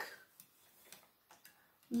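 A few faint, scattered clicks and taps from a small plastic toy tractor being handled and moved on a table.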